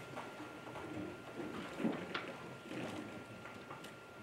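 Quiet meeting-hall room tone: faint muffled murmurs and a few small clicks over a faint steady high tone.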